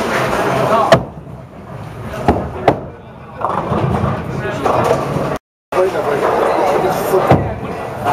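Bowling alley din: background voices with sharp knocks of bowling balls and pins, the loudest about a second in and another near the end. The sound drops out completely for a moment just past halfway.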